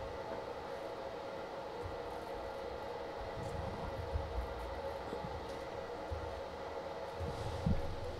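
Steady room hum, with a few faint taps from a computer keyboard.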